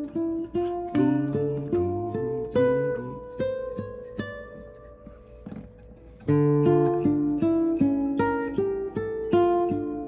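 Classical guitar playing a single-note line of plucked notes, a few a second, outlining the chords of a progression in D minor. About halfway through, the line thins out and the last notes ring and fade for a couple of seconds. Then it starts again, louder.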